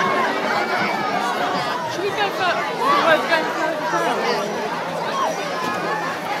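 Crowd chatter: many people talking at once, their voices overlapping, with no single speaker standing out.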